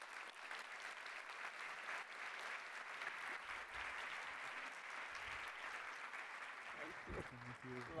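A large seated audience applauding steadily, a continuous clatter of many hands that tapers off near the end.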